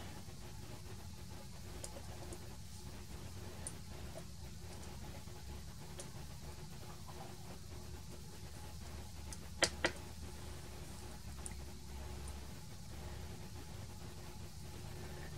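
Two quick, sharp plastic clicks close together about two-thirds of the way through, from the handheld transistor tester's zero-insertion-force socket lever and test button being worked as a diode is reseated and retested, over a faint steady room hum.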